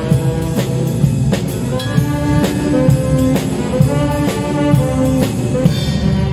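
Small ensemble playing a jazzy tune: saxophones carry the melody over a drum kit keeping a steady beat on snare and cymbals, about two strokes a second, with keyboard and guitars underneath.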